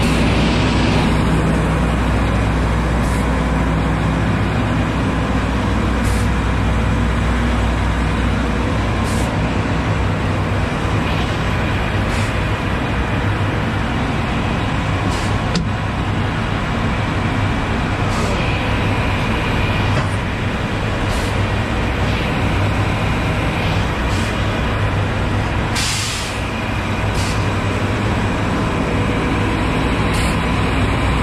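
Heavy diesel truck engine idling steadily, with a faint tick about every three seconds.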